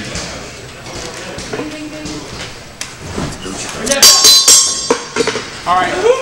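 Faint voices and room sound in a large hall. About four seconds in there is a loud, sharp clatter lasting about half a second.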